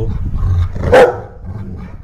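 A Rottweiler gives one loud, short bark about a second in. He is guarding his ball and chew bone while being asked to give them up.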